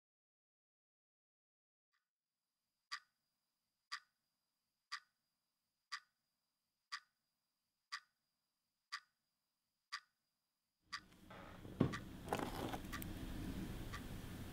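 A clock ticking once a second, nine even ticks over a faint high steady tone. Near the end the ticking stops, and a room's background hum comes in with a few knocks and rustles.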